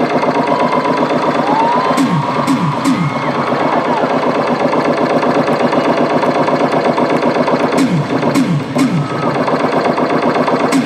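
Live concert music over the PA, with no singing: a loud, fast-pulsing buzzing instrumental passage with falling pitch swoops twice, about two seconds in and again about eight seconds in.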